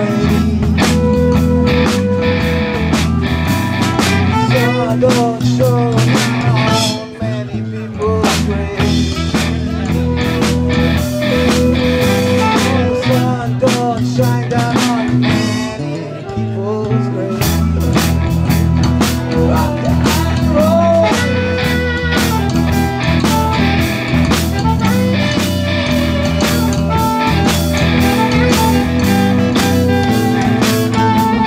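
A live rock band playing with drum kit, bass guitar, acoustic guitar and keyboard. The bass and drums drop away briefly about seven seconds in and again around sixteen seconds, then come back in full.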